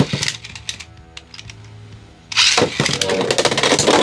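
Two Beyblade X tops launched into a clear plastic stadium about two-thirds of the way in, then spinning and clashing with a dense rattling clatter. A single sharp click comes at the very start, and faint background music sits under the quieter stretch before the launch.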